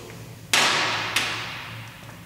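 A loud knock about half a second in, its sound dying away slowly through the workshop, then a lighter tap just after a second in.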